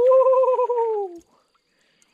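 A high-pitched human voice giving one long, wavering exclamation of about a second that slides down in pitch at the end: an excited cry as a hooked bass splashes at the boat.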